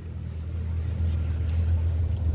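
Low, steady engine rumble of a motor vehicle running nearby, growing a little louder over the first second and then holding.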